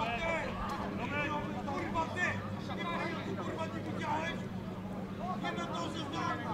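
Indistinct voices of footballers and spectators talking and calling out at a distance, over a steady low hum.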